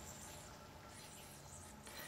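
Near silence: quiet room tone in a pause between speech.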